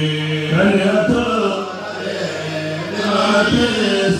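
A man chanting Arabic devotional poetry in praise of the Prophet Muhammad, holding long, slowly wavering notes without clear words.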